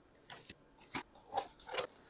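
A cardboard box being opened by hand, its flaps scraping and the plastic wrapping inside crinkling: a few faint, short scrapes and rustles spread across two seconds.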